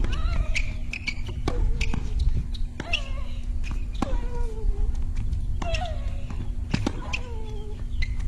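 Tennis rally: a racket strikes the ball about six times, roughly every second and a half, and each shot is followed by a player's drawn-out grunt that falls in pitch. A steady low rumble runs underneath.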